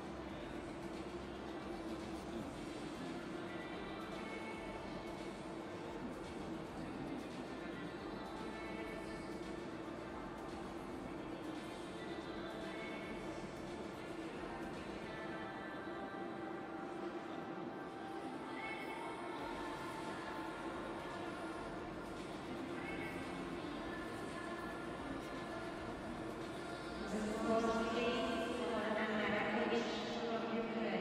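Background music over an arena sound system, steady and fairly quiet, getting louder near the end.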